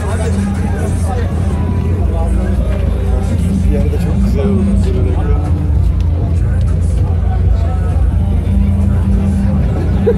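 Nissan GT-R R35's twin-turbo V6 idling steadily, with crowd chatter over it.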